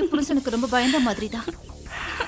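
A woman speaking in film dialogue, then a quieter stretch of breathy, hiss-like noise near the end.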